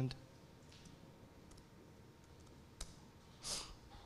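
A few faint, sharp clicks from a laptop's keys or trackpad as a file is opened, with a short breathy hiss near the end.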